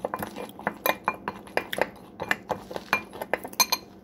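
A metal spoon clinking against a glass mixing bowl as corn starch powder is stirred: quick irregular taps, several a second, some with a short glassy ring.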